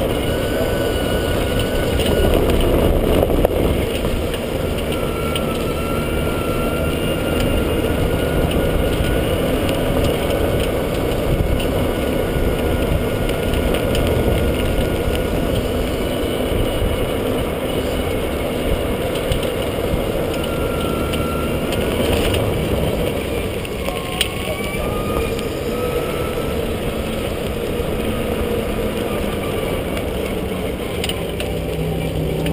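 E-Z-GO RXV golf cart driving along a paved path, heard from a camera mounted low on its body beside the wheel: a steady rumble of tyres and wind, with a faint whine that rises and falls in pitch in places as the speed changes.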